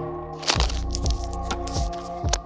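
Background music: held chords over a beat of low thumps and sharp clicks, a few to the second.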